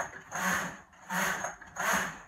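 Knitting machine carriage pushed back and forth across the needle bed, knitting rows: a short scraping rush on each pass, about three passes in quick succession, about two-thirds of a second apart.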